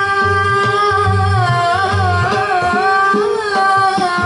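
Live Carnatic–Hindustani jugalbandi: a woman's voice sings gliding, ornamented phrases. Violin and hand drums accompany her over a steady drone.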